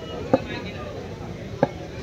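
Two short sharp knocks about a second and a half apart, over a low murmur of distant voices from an open-air crowd.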